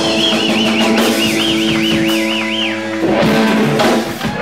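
Live rock band with electric guitars, bass and drum kit playing: a high lead-guitar note wavers with wide, even vibrato over sustained low notes. About three seconds in, the band hits a final accent as the song ends.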